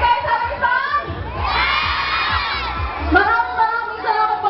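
Crowd of fans screaming and cheering, many high-pitched voices overlapping, swelling to its loudest about a second and a half in and easing off again toward the end.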